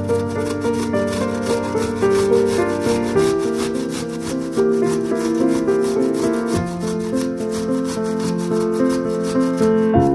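A peeled onion being grated on a stainless steel box grater in quick, repeated strokes, over background music.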